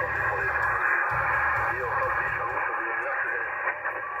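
Yaesu FT-891 HF transceiver's speaker receiving the 20-metre band on upper sideband: garbled, overlapping voices of distant stations over a steady hiss of band noise, with a narrow, telephone-like sound.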